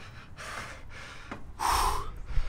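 A man breathing heavily, puffing out short breaths while climbing steep tower stairs, with a loud hard exhale near the end.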